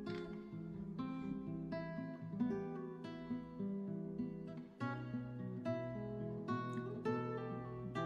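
Soft, clean guitar passage from a progressive metal song: single plucked notes and chords ringing into each other, a new one about every half second to a second. A short gap comes a little under five seconds in, then a lower held note enters beneath the picking.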